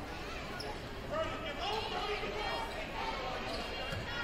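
Basketball game sound in a gymnasium: a ball dribbling on the hardwood floor, with players and spectators shouting over the crowd noise from about a second in.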